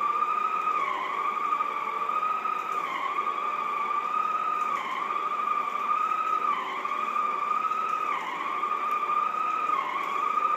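Shark Sonic Duo floor cleaner running on setting one, buffing polish into hardwood with its polishing pad: a steady high-pitched motor whine that dips briefly in pitch about every two seconds as the head is pushed back and forth.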